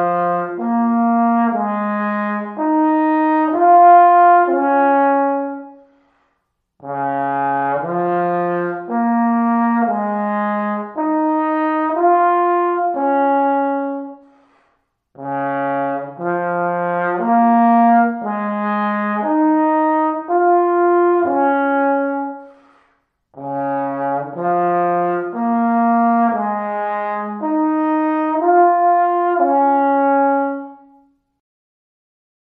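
Solo trombone playing a short rising-and-falling phrase of separate notes, four times over with a brief breath between each. It is an articulation exercise, contrasting hard 'ta' and soft 'da' tongued attacks with slurred notes.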